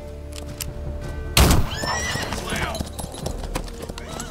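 A loud hit about a second and a half in, followed by a horse's shrill, falling whinny, over sustained music.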